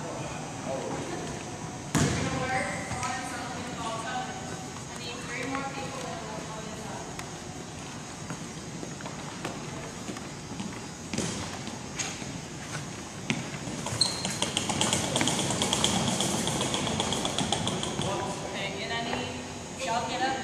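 Indistinct voices of people in a gym, with a few sharp thumps of a volleyball being played, the loudest about two seconds in and several more between about 11 and 14 seconds.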